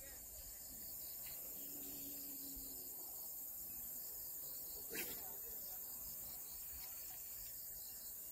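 Faint, steady high-pitched chirring of insects such as crickets, with one short sharp click about five seconds in.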